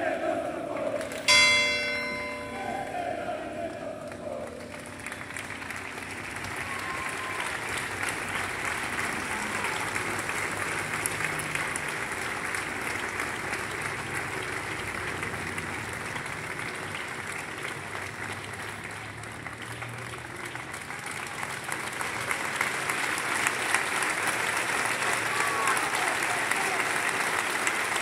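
A single bell strike about a second in that rings out and fades over a couple of seconds, then a large crowd applauding steadily, swelling louder near the end.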